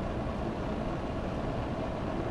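Steady low background hum and hiss of the room, with no other event.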